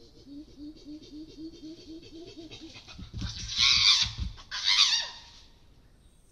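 Chimpanzee pant hoot: a quick series of panted hoots, about five a second, builds into two loud screams at the climax. Low thumps under the first scream fit the chimpanzee drumming on the tree buttress during the display.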